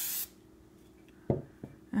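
Aerosol spray can hissing in a short burst to fix the pastel drawing, cutting off a moment in. A soft knock follows about a second later.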